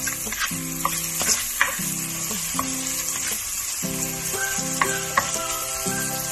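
Meat, onions and tomatoes sizzling as they sauté in a nonstick wok, stirred with a spatula that scrapes and taps against the pan a few times.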